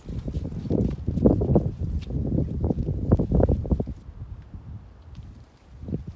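Footsteps crunching on packed snow in quick, close thuds, loud for the first four seconds or so, then fading, with a few more steps near the end.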